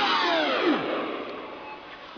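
A played-back song winding down in a tape-stop effect: the whole track's pitch slides steeply down over about a second and fades away, leaving a quieter stretch before the next song comes in.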